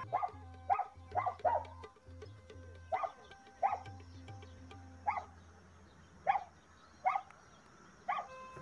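A dog barking repeatedly, about nine short barks at irregular intervals, over faint background music.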